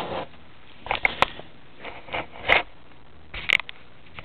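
A grey plastic laptop docking station being handled and turned in the hand: a handful of short knocks and scrapes, spaced irregularly.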